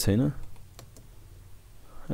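A few faint, scattered computer keyboard keystrokes as code is typed.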